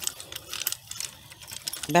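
Spiked metal tines of a rotary hand cultivator rolling and scraping back and forth through dry, stony soil: a run of irregular clicks and gritty scratching as it rakes out the weeds.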